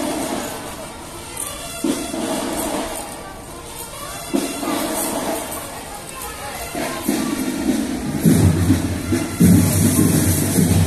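Marching band music playing in a repeating phrase, growing louder and heavier with strong low beats from about seven seconds in, with voices of the crowd mixed in.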